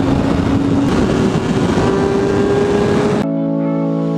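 Kawasaki ZX-6R's 636 cc inline-four engine at high revs in fifth gear, with wind rushing over the microphone. The engine note jumps up about a second in and keeps climbing slowly as the bike pulls toward top speed. Near the end it cuts off suddenly and electronic music takes over.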